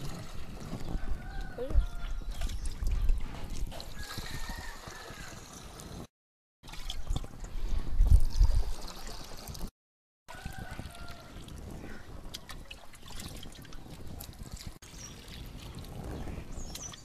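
Liquid leaf extract poured from a plastic mug into a plastic jerrycan, trickling and splashing unevenly, with the low knocks of plastic being handled. The sound drops out to silence twice for a moment, about six and ten seconds in.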